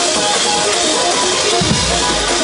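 Loud live gospel praise-break music: a keyboard playing quick short notes over a drum kit with constant cymbals, and a deep bass note swelling in near the end.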